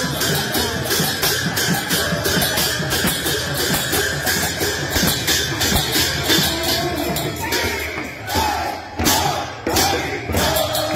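Kirtan devotional music: voices singing over a steady, even percussion beat, the music thinning briefly near the end.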